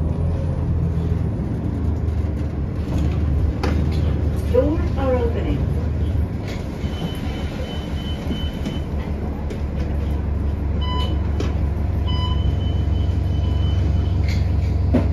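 Inside a city transit bus: the steady low drone of the bus's drivetrain, standing at a stop for the later part. A few short, high electronic beeps sound in the second half.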